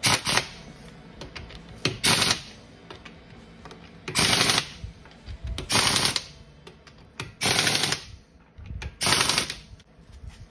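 Impact wrench on its lowest setting, hammering lug nuts in six short bursts about every one and a half to two seconds: the nuts are being snugged up lightly on a car wheel before final torquing.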